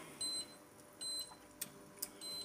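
Induction hob's touch controls beeping twice, short high beeps under a second apart, as the power level is set.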